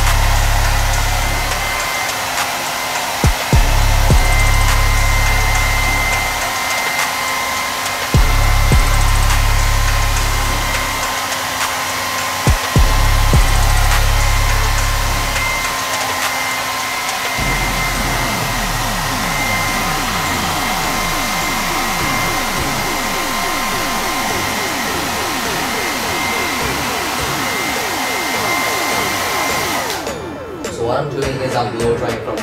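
Compact ionic hair dryer blowing steadily, its motor giving a constant whine over the rush of air. A low rumble comes and goes during the first half.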